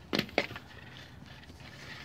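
Two short clicks, the first about a fifth of a second in and the second just under half a second in, then faint steady room tone.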